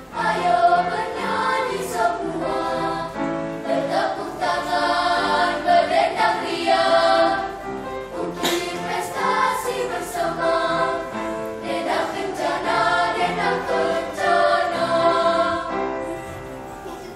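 Children's choir singing in phrases of held notes. The song ends just before the end, the last chord dying away.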